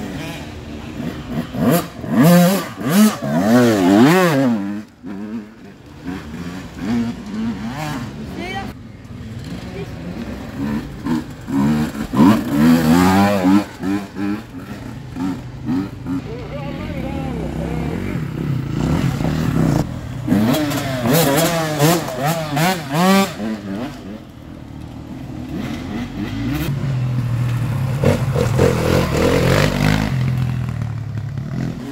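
Enduro dirt bikes riding past on a woodland trail one after another, their engines revving up and down in pitch as the riders work the throttle. There are several passes, each swelling and then fading.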